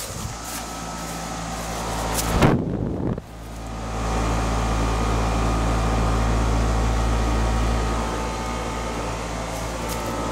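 Bryant 3-ton straight-cool condensing unit running, its Copeland scroll compressor humming steadily under the condenser fan's air noise. A loud burst of noise lasting about a second comes a little past two seconds in, and the low hum is louder from about four seconds in.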